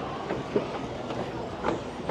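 A moving escalator running with a steady rumble, with a couple of separate knocks on its metal steps.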